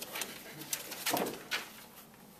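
Sheets of paper rustling and crackling as they are leafed through and handled, in several short bursts. A brief, louder low sound comes about a second in.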